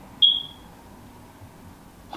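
A single short, high-pitched beep about a quarter of a second in, sharp at the start and fading away within half a second.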